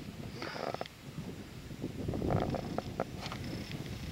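Wind rumbling on the microphone, with a few faint knocks.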